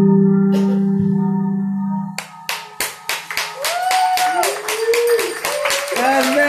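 A band's last held chord of sustained keyboard and guitar tones rings out and dies away, then the audience breaks into clapping about two seconds in, joined by cheering whoops that rise and fall.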